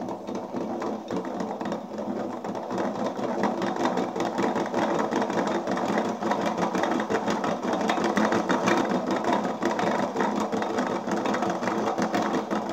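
Bajaj CT 100 crankshaft turned by hand through its connecting rod, its main bearings giving a continuous fast rattling grind that grows slightly louder as it goes on. The mechanic reads the noise as worn crankshaft bearings that need replacing.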